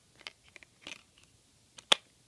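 Plastic clicks as a Blu-ray disc is handled in its case and pressed onto the center hub, ending in one sharp, loud snap near the end as the disc seats on the hub.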